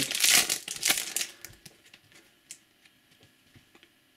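Foil trading-card pack wrapper crinkling as it is pulled open. The sound is loudest in the first second and a half, then fades to a few faint ticks.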